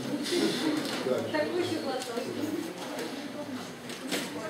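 Indistinct, low talking: voices murmuring with no clear words, and no music playing.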